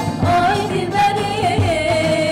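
Two women singing together, accompanied by a plucked bağlama (long-necked saz) and a hand-played frame drum giving a low beat about twice a second. The sung line holds long notes with small ornamental turns.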